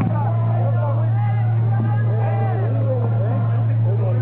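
Live band on stage: a loud, steady low drone with a vocalist's voice gliding over it.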